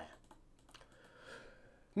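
A couple of faint keystrokes on a computer keyboard.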